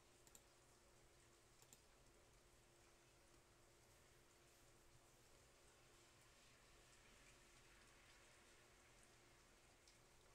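Near silence: room tone with a faint steady hum and a couple of faint clicks.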